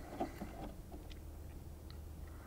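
Quiet room tone with a steady low hum and a few faint clicks as a synthesizer's control knob is turned; no note is played.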